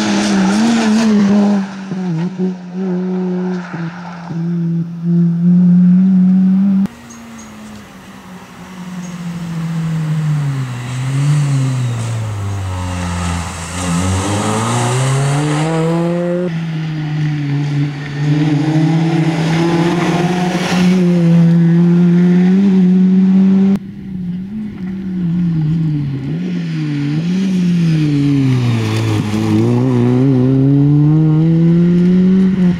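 Peugeot 206 rally car driven hard, its engine revving up and down: the pitch drops as it brakes and shifts down, then climbs again on the throttle. Several passes are joined by abrupt cuts.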